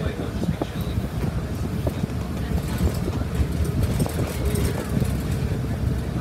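City transit bus driving, heard from inside the cabin: a steady low engine and road rumble with scattered clicks and rattles from the bus interior.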